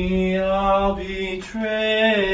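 A man singing long, steady notes without words, like a chant. The first note is held for about one and a half seconds, then a second, slightly higher note begins.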